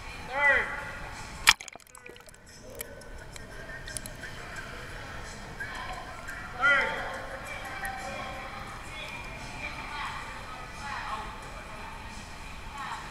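Pool water sloshing heard through a camera microphone that dips underwater, going in with a sharp knock about a second and a half in, after which the sound turns dull and muffled. Short voice calls sound shortly before the knock and again about seven seconds in.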